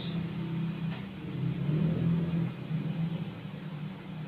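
A steady low mechanical hum, swelling slightly partway through.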